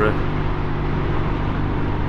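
1971 Triumph Trophy TR6C's 650 cc parallel-twin engine running steadily under way at a constant road speed: an even low drone that holds its pitch.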